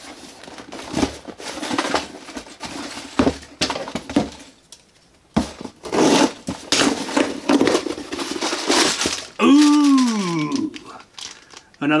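A cardboard shipping box being cut open with scissors and its packaging rustled and crinkled, in irregular scrapes, snips and crackles, busiest in the second half. Near the end a short wordless vocal sound falls in pitch.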